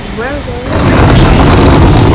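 A brief spoken sound, then about two-thirds of a second in a sudden cut to loud, steady rushing noise of a car on the move.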